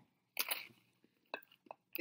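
A man biting into and chewing an s'more of graham cracker, marshmallow and chocolate: a few short, soft crunching sounds about half a second in, then a couple more near the end.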